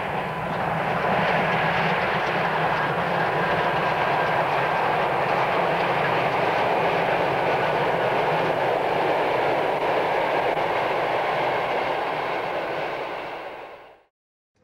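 Class 01.10 three-cylinder steam locomotive hauling a passenger train under load. It gives a steady, loud rush of running noise that fades out near the end.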